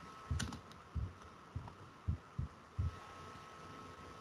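Keystrokes on a computer keyboard: about seven dull, low taps at uneven spacing, the first with a sharper click, over a faint steady hum.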